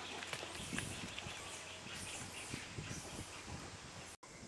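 Outdoor ambience: a steady faint hiss with many small scattered clicks, taps and rustles.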